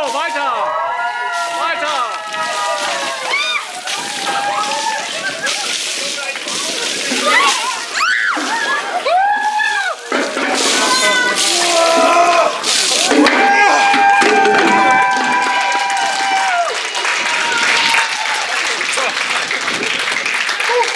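Buckets of ice water tipped over several people in turn, splashing down onto them and the pavement, with shrieks and yells from the people being doused.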